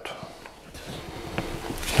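Quiet handling noise of a small axe in its plastic blade sheath being turned in the hands, with one faint click about one and a half seconds in.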